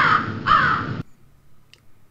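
Crow-caw sound effect: two harsh caws about half a second apart, cutting off abruptly about a second in.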